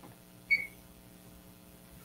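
A single short, high-pitched tone about half a second in, over quiet room tone with a faint steady hum.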